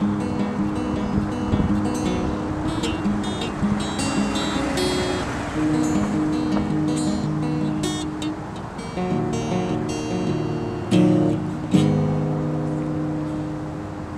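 Acoustic guitar playing chords with the notes left ringing, in an instrumental passage with no singing. There is a brief lull about two-thirds of the way through, then two sharply struck chords.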